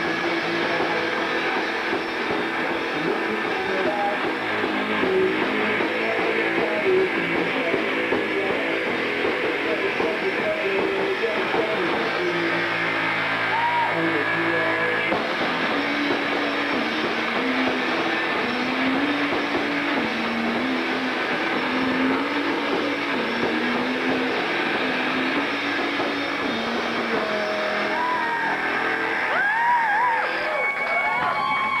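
Live rock band playing electric guitar and drums, loud and steady throughout. From about halfway through, a low melody line stepping up and down stands out over the wash of guitar and cymbals.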